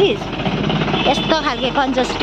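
Engine noise from a scooter on the move and a jeep passing close by, a steady running note mixed with road and wind noise.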